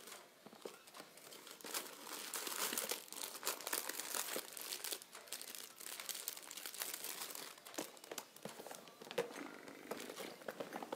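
Packaging crinkling and rustling as jewelry stock is rummaged through by hand, a dense run of small crackles that builds about a second and a half in and eases toward the end.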